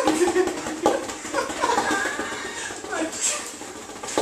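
Indistinct talking: people's voices running together in a small room, no clear words.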